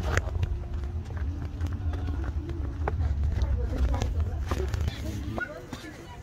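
Footsteps climbing steep stone steps, with a heavy low rumble of movement on the handheld microphone that stops suddenly about five seconds in.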